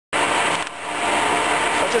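Colchester Mascot lathe running at slow speed, its gear train giving a steady whine of several tones, with a brief dip in level about two-thirds of a second in.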